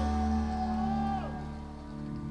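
A live band playing: a held note slides down and fades about a second in, leaving sustained low chords as the music quiets between lines.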